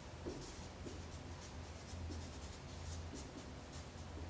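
Dry-erase marker writing on a whiteboard: a quick run of short scratchy strokes as a curly brace and then letters are drawn. A steady low hum sits underneath.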